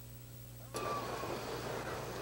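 Steady low electrical hum on an old broadcast recording; about three-quarters of a second in, a steady noisy background of the racetrack cuts in suddenly as the broadcast sound opens up.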